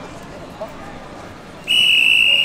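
A referee's whistle gives one long, steady, shrill blast near the end, halting the wrestling action. Faint voices sound underneath before it.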